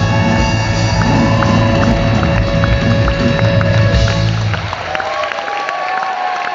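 A live rock band playing loudly through a theatre sound system, with drums and bass driving a steady beat. About five seconds in the bass and drums drop out, leaving sustained held notes.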